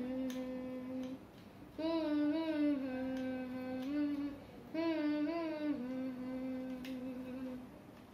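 A voice humming a short tune in repeated phrases, each wavering phrase ending on a long held note, with brief pauses between them.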